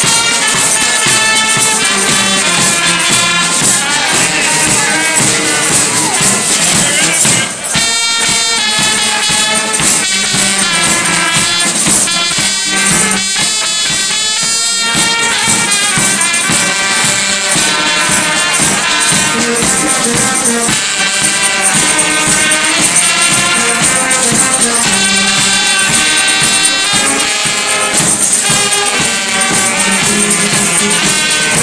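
Limburg carnival band (zate hermenie) playing a brass tune on trumpets and saxophone over bass drum and snare drum, with a small hand percussion instrument shaken along.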